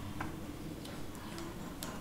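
Low steady room hum with a few soft, irregularly spaced clicks.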